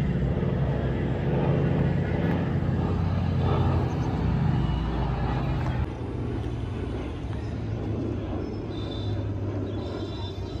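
Steady low drone of aircraft engines flying over in a flypast. It drops a little in level about six seconds in.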